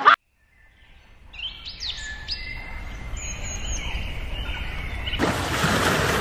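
Wild birds chirping and whistling in short notes that glide up and down, with one longer held whistle, over a low background rumble. About five seconds in, a steady rushing noise takes over.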